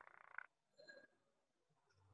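Near silence, with a faint, short raspy sound in the first half second.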